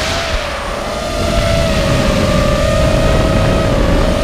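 Onboard sound of a QAV210 FPV racing quadcopter in flight: its 2633 kV brushless motors spinning 5050 propellers make a steady buzzing whine that wavers slightly in pitch, over a rush of air and prop wash. The sound eases a little at the start and picks up again about a second in.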